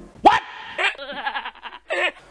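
A comic meme sound effect: a short rising whoop, then a high, quavering cry lasting about a second, and another short cry near the end.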